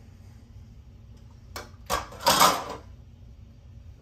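A kitchen drawer sliding open with a short rattle, just after two sharp clicks about halfway through.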